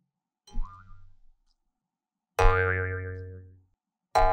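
A cartoon-style 'boing' sound effect: a sudden twangy tone that wobbles in pitch and fades away over about a second, about two and a half seconds in. A fainter, shorter sound comes about half a second in.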